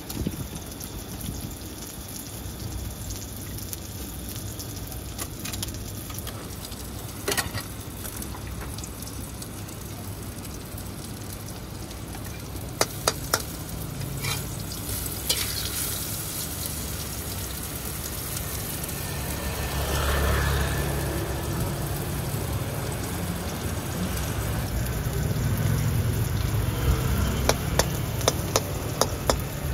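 Egg omelette sizzling as it fries in plenty of hot oil in a wok, getting louder in the second half. A few sharp clinks of the metal spatula against the wok stand out, several close together near the end.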